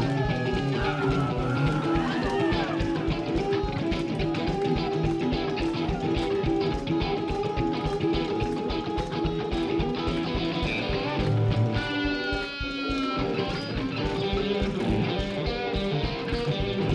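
A live rock band playing an instrumental passage: electric guitars play lead lines over bass and a steady drum beat, with bending notes early on and a high falling line about twelve seconds in.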